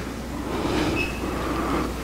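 Steady rushing hiss over a low hum, with no voice. A faint brief high tone comes about a second in.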